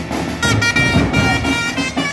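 A pipe band's bagpipes playing a march. The melody moves in steps between held high notes over a low steady drone, and comes in strongly about half a second in.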